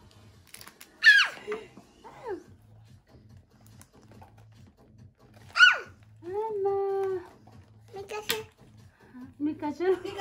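A little girl's voice: short high-pitched squeals that fall sharply in pitch, twice about a second in and once past the middle, then a drawn-out vocal sound. Excited chatter follows near the end.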